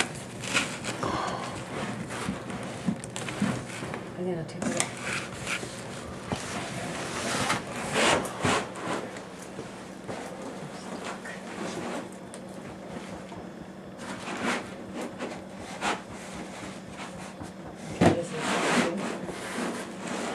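Cardboard box and foam packing inserts being handled while a computer is unpacked: irregular rustling, scraping and light knocks throughout.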